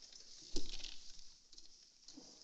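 A desk telephone handset lifted from its cradle: a sudden knock about half a second in, followed by a brief rustle that fades.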